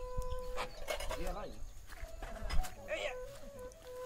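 A dog whining: a long, steady high note at the start and another, slightly wavering one in the second half.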